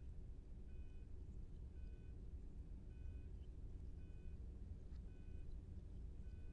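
Hospital patient monitor beeping faintly, a short beep repeating evenly about once a second, like a heart-rate tone, over a low steady hum.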